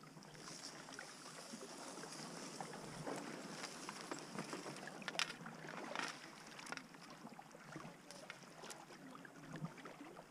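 Faint sounds of kayak paddling: the paddle blade dipping and water splashing and dripping, with a few sharp clicks scattered through.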